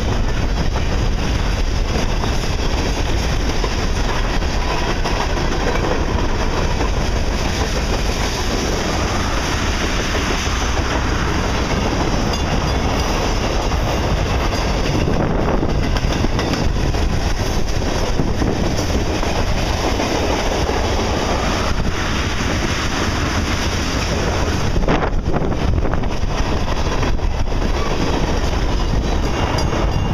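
Freight cars of a Canadian Pacific train, hopper cars and then tank cars, rolling past close by: a loud, steady noise of steel wheels running on the rails.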